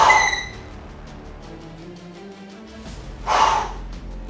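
Background music with a steady beat, over which come two short, loud breaths: one right at the start and one a little past three seconds in. These are forceful exhalations during a set of barbell curls.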